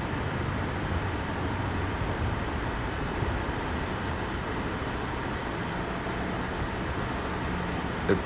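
Steady outdoor background noise with no distinct events. A faint low hum, like a distant engine, joins about five and a half seconds in.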